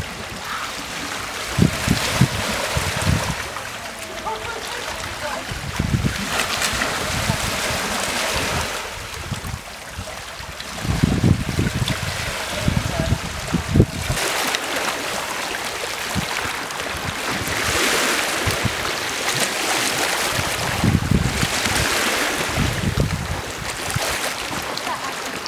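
Sea water washing in the shallows of a rocky shore, rising and falling in swells, with wind buffeting the microphone in gusts.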